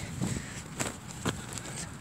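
Faint handling noise: soft rustles and a few light knocks as plush toys and a handheld camera are moved about over grass.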